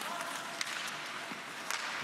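Ice hockey play on the rink: a steady hiss of skating and on-ice noise, with a couple of faint knocks about a second and a half in.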